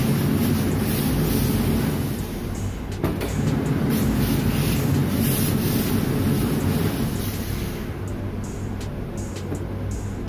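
Hose-fed industrial steam iron hissing out steam in swelling bursts while its steam button is held, over the steady low hum of the ironing station's machinery.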